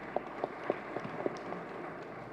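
Light applause from an audience: a few scattered hand claps over a steady hiss, after a call to clap for the deceased.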